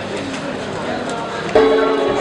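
Murmur of a queuing crowd, then, about one and a half seconds in, music starts abruptly with steady held notes.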